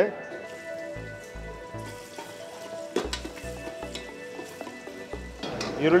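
Chopped onion sizzling as it fries in hot oil in an aluminium pressure cooker, with a single sharp knock about halfway through.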